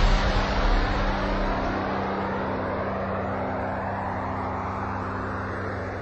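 Jet aircraft engine noise, loud at first and slowly fading away as the aircraft passes and recedes, with a steady low hum beneath it.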